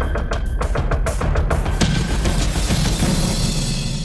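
Drum-heavy theme music with rapid, dense percussion hits.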